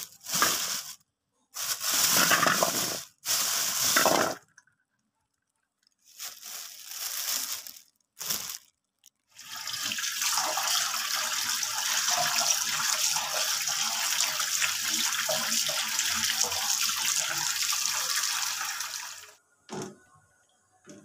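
Water running from a tap into a sink, in several short stretches broken by abrupt silences, then steadily for about ten seconds before it stops.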